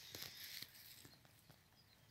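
Near silence: faint outdoor background hiss with a few soft ticks.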